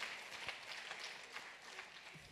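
Faint, scattered clapping from an audience.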